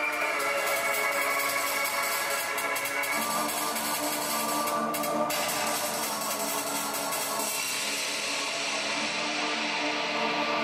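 Electronic music with sustained synthesizer tones. The notes shift to a new, lower chord about three seconds in, a brief burst of hiss comes about five seconds in, and the high end fades away near the end.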